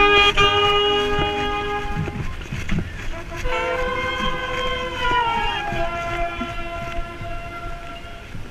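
Marching band brass playing long held chords, with the sousaphone right at the microphone. The first chord cuts off about two seconds in; after a short gap a new chord comes in and its upper notes slide down partway through before it settles and holds.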